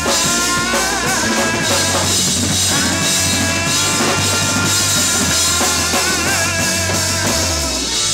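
Live funk band playing an instrumental passage: drum kit, bass guitar and electric guitars, with sustained bending melody lines over a steady groove.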